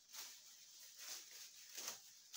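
Birch branches with their leaves and twigs rustling as they are handled and gathered by the armful into a bath broom: a few short, faint rustles, the loudest near the end.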